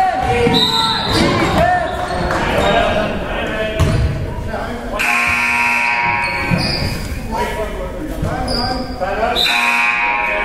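Basketball game in a gym: a ball bouncing and players' voices calling, then a loud scoreboard buzzer sounding for about a second and a half about five seconds in, with a shorter sounding near the end as play stops.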